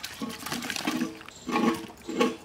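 Cubes of wax gourd tipped from a plate into a metal bowl of water, splashing in several separate bursts, the loudest about one and a half seconds in.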